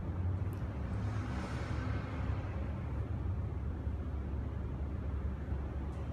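Steady low background rumble, with a short click about half a second in and a soft swish from about one to two and a half seconds in.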